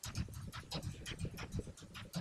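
Typing on a computer keyboard: a quick, irregular run of key clicks, about six a second.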